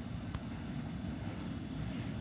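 Crickets chirping in a steady, pulsing high trill, with a low rumble underneath.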